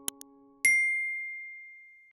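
Subscribe-button sound effect: two quick clicks, then a single bright bell ding that rings and fades away over about a second and a half. Beneath the clicks, the tail of a held keyboard chord fades out and is cut off by the ding.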